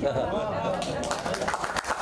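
Audience reaction: several voices at once, then scattered hand clapping in the second half.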